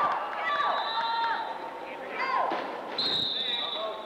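Wheelchair rugby play in an echoing gymnasium: players' voices and shouts, with two high, held squeals, the first about half a second in and the second about three seconds in.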